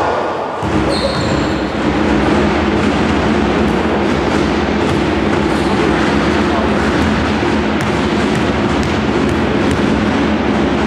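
Indistinct voices echoing in a sports hall during a basketball game, with a short referee's whistle about a second in and a few basketball bounces on the wooden floor.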